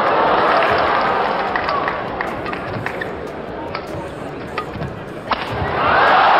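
Badminton rally in an indoor hall: sharp racket hits on the shuttlecock and short squeaks over a steady murmur of the crowd. About five seconds in, the crowd noise swells loudly as the rally ends.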